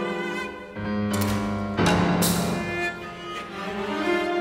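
Contemporary orchestral music: a solo cello with orchestra, sustained bowed notes broken by two sharp accented attacks about one and two seconds in, the second the loudest.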